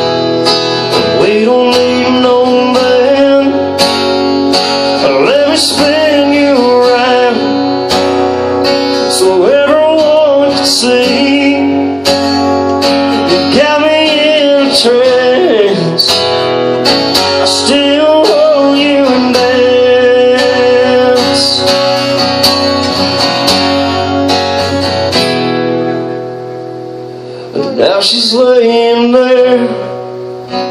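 Amplified acoustic guitar strummed in a steady rhythm, with a singing voice carrying a melody over it. The playing softens for a couple of seconds near the end, then comes back with a loud strum.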